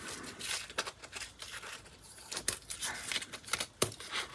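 Scissors snipping through stiff, gesso-coated paper netting: a string of irregular short snips and crackles of the stiffened paper.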